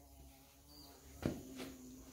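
Faint steady insect buzzing, a low hum, with one brief soft thump a little past halfway.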